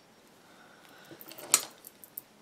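Faint handling noises at a craft work surface, with a few small clicks and one sharper click about one and a half seconds in, as hands move off the clay piece.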